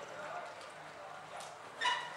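Low murmur of an indoor riding hall, with a short, loud, high-pitched yelp near the end.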